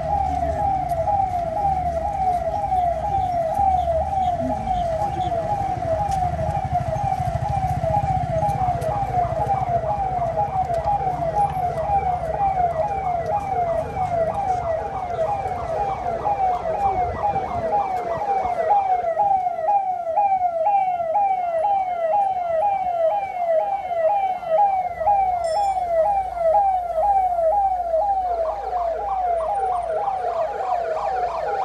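Police vehicle siren sounding throughout in rapid, repeating falling sweeps. A second siren overlaps it from about nine seconds in, and a low vehicle-engine rumble runs beneath for roughly the first eighteen seconds.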